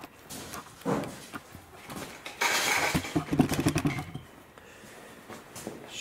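Footsteps and handling knocks as a person moves over a concrete floor, with a louder stretch of shuffling and scraping from about two and a half to four seconds in.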